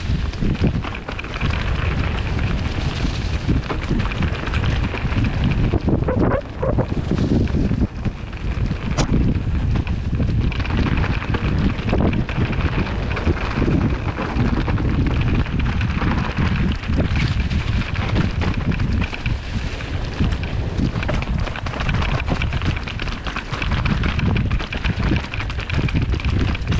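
Wind buffeting a helmet-mounted microphone during a fast mountain-bike descent, over the steady rumble of a steel hardtail's tyres rolling on a dirt trail strewn with dry fallen leaves. The noise is continuous, with brief dips and a sharp click about nine seconds in.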